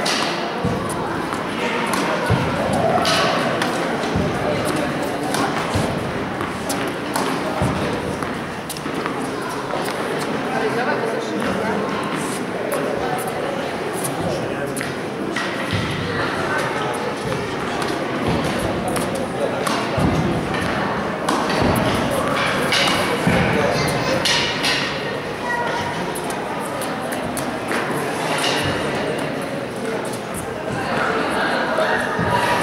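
Tennis balls being hit with rackets and bouncing on an indoor court: irregular sharp pings and thuds echoing in a large hall, over a constant murmur of voices.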